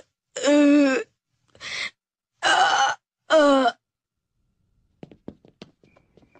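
A boy's voice crying out in pain four times in quick succession, with drawn-out wordless yells and moans, as a cartoon beating plays out. A few faint ticks follow near the end.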